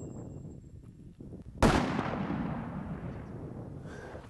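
A single .300 Short Mag rifle shot about one and a half seconds in, its report rolling away in a long echo that fades over the next two seconds.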